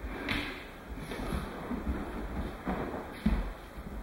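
Aikido ukes being thrown and taking falls on padded dojo mats: a series of dull thuds and scuffs of bodies and cotton uniforms hitting and rolling on the mat, the loudest thud about three seconds in.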